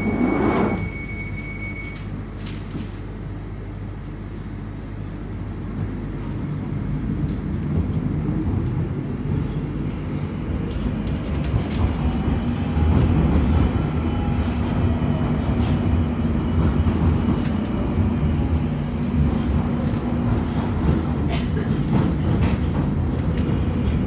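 London Underground Northern line train pulling out of the station and gathering speed into the tunnel. Its running noise grows louder from about six seconds in, with a rising motor whine and a rumble and clatter from the wheels.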